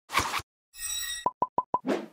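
Animated-logo outro sting made of sound effects: a short whoosh, then a brief bright shimmering tone, then four quick plops in a row and a second whoosh at the end.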